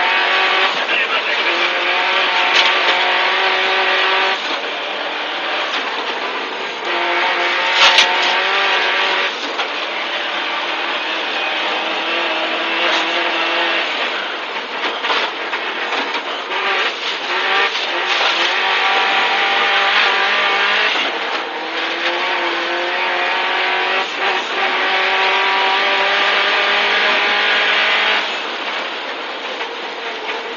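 Subaru Impreza WRX STI rally car's turbocharged flat-four engine, heard inside the cabin, driven hard on a snowy stage. Its note climbs through each gear and drops at the shifts, for example about four seconds in and near the end. A single sharp click comes about eight seconds in.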